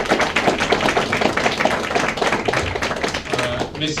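Audience applauding, a dense patter of many claps that dies away near the end.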